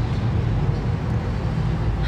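Steady low rumble of outdoor street background noise, with a faint hiss above it.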